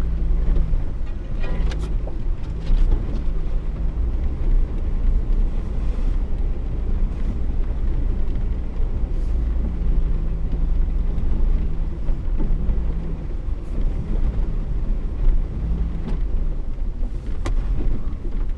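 Vehicle engine running at low revs, with a steady deep rumble heard from inside the cab as it crawls through deep snow. A few sharp knocks or rattles come through, one about a second and a half in and another near the end.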